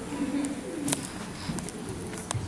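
Low, indistinct voices hum and murmur in a hall, with two sharp clicks, the second louder, about half a second and a second in.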